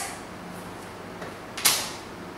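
Quiet room tone, broken about one and a half seconds in by a single short, sharp knock as a small object is set down on a hard surface.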